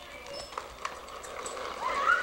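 Children's shoes scuffing and tapping on a concrete driveway as they run, a few sharp separate steps, with a child's voice starting up near the end.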